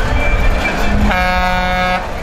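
A vehicle horn gives one steady blast starting about a second in, over the low engine rumble of a passing army truck.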